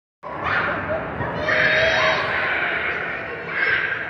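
Children's voices and chatter in a busy indoor play area, with one long high-pitched squeal from a child about a second and a half in.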